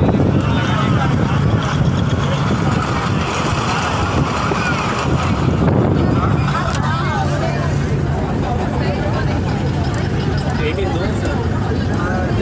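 Bus driving along, heard from inside the cabin: a steady engine hum with road and wind noise on the microphone.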